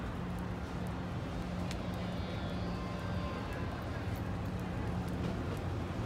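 Steady low rumble of idling car engines and street traffic with a constant hum, faint voices far off in the background.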